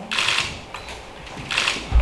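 Handling noise from a handheld microphone being passed from one person to another: two short scuffing noises, then a low bump near the end.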